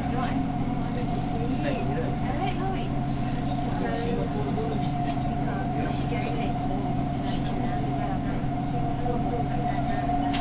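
An elevated metro train running steadily, heard inside the carriage: a constant running rumble with a steady whine and hum, under background voices.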